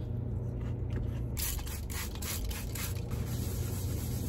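Paper towels being handled, with a run of short scratchy rubbing and rustling strokes starting about a second and a half in, over a low steady hum.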